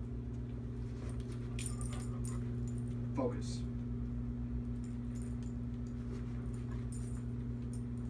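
A dog's metal collar tags and leash clip jingling lightly as it moves, in a few quick clusters, over a steady low hum in the room.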